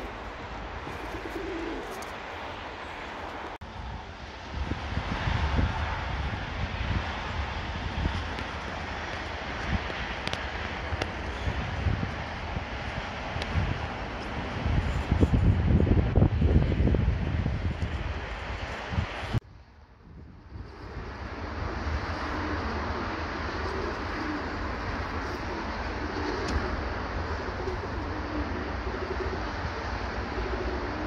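Birmingham Roller pigeons cooing. Through the middle stretch a loud low rumble covers them and then cuts off suddenly, after which the cooing carries on.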